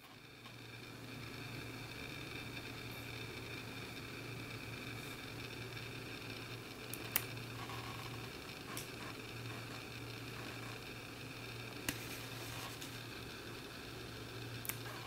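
Small pet nail clippers snipping a kitten's claws: a few sharp clicks, the loudest about halfway, over a steady low hum and hiss.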